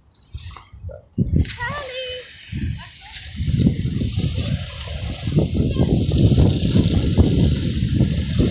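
Water sloshing and splashing at the shoreline as a dog wades into shallow water. From about three seconds in, wind rumbles loudly on the microphone. A short high-pitched voice-like call comes early on.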